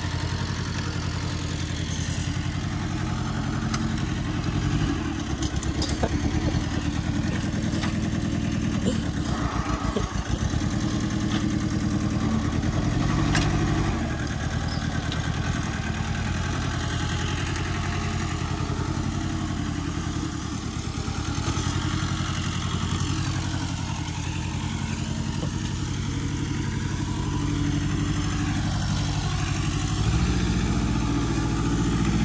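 Small farm tractor's engine running steadily while it pulls a rear tine cultivator through the loosened soil.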